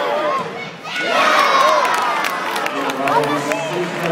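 Spectator crowd in an indoor football hall breaks into loud cheering and shouting about a second in, the reaction to a penalty kick in a shootout.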